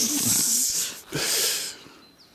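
A person's breathy, wheezing laugh in two hissing bursts, the second shorter.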